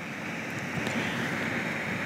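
A steady hiss of background noise that slowly grows a little louder, with no speech over it.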